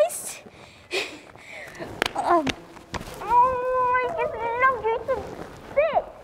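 A person's voice making drawn-out, wordless sounds, the longest held at a steady pitch for over a second. There are three sharp knocks, about a second apart, before it.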